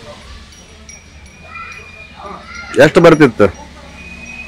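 An elderly woman's voice, low and faint at first, breaking into a short, loud, quavering wail about three seconds in.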